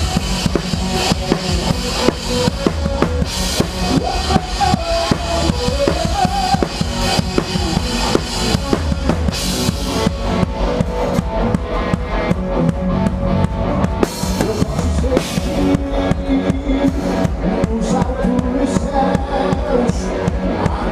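Drum kit played live in a full band, close and prominent in the mix: kick drum, snare and cymbals over the band's pitched instruments. The constant cymbal wash thins out about halfway through, leaving mostly drums with occasional cymbal crashes.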